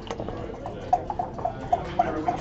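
Backgammon dice being rolled onto the board: a run of small, quick clicks, with a sharper knock near the end.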